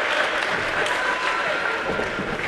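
Spectators applauding the point that ends the game at 11–9, the clapping slowly dying away, with a few voices in the crowd.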